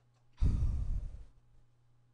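A person sighing, one long breath out lasting just under a second that blows onto a close clip-on microphone, over a faint steady hum.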